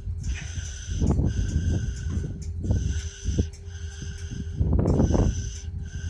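Freight train of tank cars moving slowly through a grade crossing: a high squeal that breaks off and returns every second or so, over a low rumble. Wind gusts on the microphone about a second in and again near five seconds.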